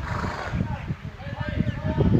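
A horse neighing, with people's voices in the background.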